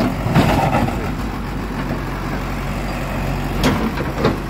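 A JCB backhoe loader's diesel engine running steadily at low revs, with a short rush of noise about half a second in and a sharp knock near the end.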